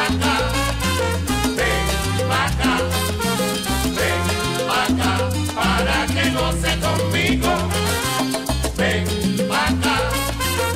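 Instrumental salsa by a sonora-style band, with no vocals: a repeating bass line and percussion keep a steady dance rhythm under the full band.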